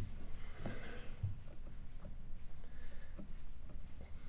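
A man at a microphone, choked up, sniffling and breathing as he composes himself before speaking, with a few faint short sniffs over a low steady hum.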